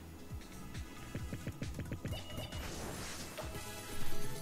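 Online slot game audio: background music with a rapid string of short sound effects as symbols drop and clear on the reels.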